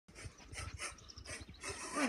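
A dog panting faintly, quick breathy puffs a few times a second.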